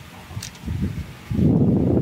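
Wind buffeting a phone's microphone: low rumbling gusts, getting much louder about a second and a half in.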